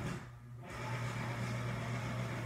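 A steady low electrical hum from a running appliance, with a whirring noise that builds up about half a second in.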